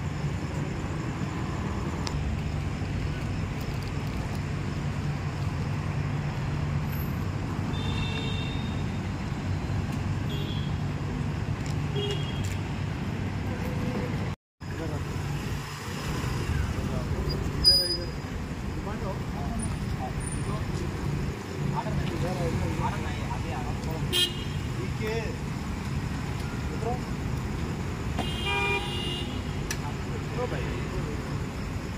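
Busy road traffic with motorcycle and scooter engines running, a steady low engine hum and vehicle horns sounding a few times, with indistinct voices. There is a brief dropout about halfway through.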